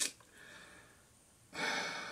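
A short click, then a person's breath heard close on the microphone, starting about a second and a half in and fading away.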